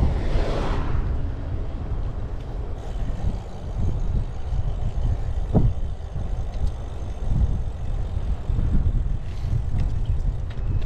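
Wind buffeting the microphone of a moving bicycle rider: a steady low rumble, with a louder hissing rush in the first second and one brief sharp sound a little past halfway.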